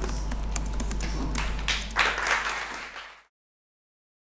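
Audience applauding: scattered claps that thicken about two seconds in, then cut off suddenly.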